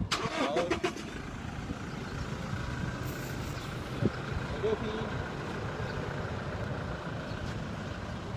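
A motor vehicle's engine running steadily at low revs, after a brief clatter in the first second.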